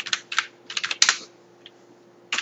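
Typing on a computer keyboard: a quick run of keystrokes through about the first second, then the typing stops.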